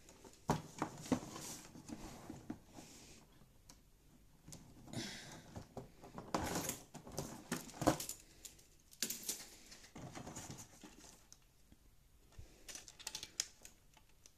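LEGO Technic plastic parts clicking and knocking as a tracked suspension assembly is handled and set down on a table. The clicks are light and irregular, with a louder knock about eight seconds in.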